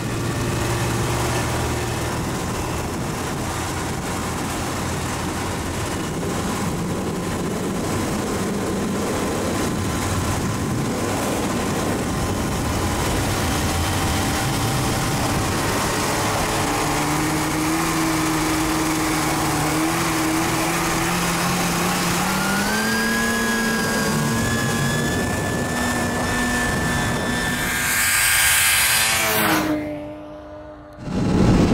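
Snowmobile engine running at speed over a rushing noise of wind and snow, its pitch climbing in steps as it speeds up over the second half. Near the end it swells into a loud rush as a snowmobile passes close by, then drops off sharply.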